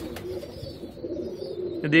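Domestic pigeons cooing, a low wavering call that carries on through the pause.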